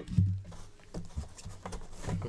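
Gloved hands handling a trading-card box and its lid on a tabletop: a dull thump just after the start, then lighter knocks and taps as the packaging is shifted and opened.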